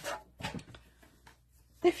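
A paper trimmer's cutting head sliding through a sheet of patterned paper: a short scratchy rasp with a few light clicks about half a second in, followed by a soft rustle as the paper is handled.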